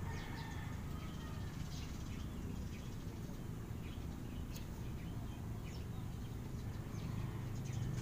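Steady low background hum with scattered short, faint high chirps, like small birds calling.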